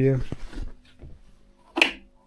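The end of a man's drawn-out spoken sound, then faint handling and shuffling noises, and one short sharp sound near the end.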